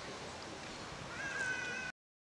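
A short pitched animal call starts about a second in, rising briefly and then held for under a second, over a steady background hiss. The sound then cuts off abruptly near the end.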